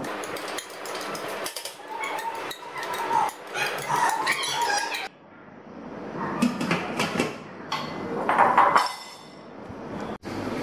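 Soaked mung beans scraped out of a bowl into a stainless steel steamer basket, with repeated clinks and squeaks of the bowl against the metal rim. About halfway through, the steamer's stainless steel lid is set on with a few ringing metallic clinks.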